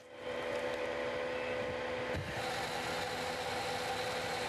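Truck-mounted forestry crane with a harvester head, its engine and hydraulics running with a steady mechanical hum and a constant tone; a higher hiss rises a little about two seconds in.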